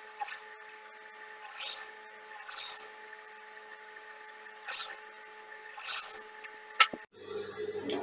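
Industrial sewing machine stitching a seam in short runs: a steady faint motor hum with five brief bursts of sewing, and a sharp click near the end.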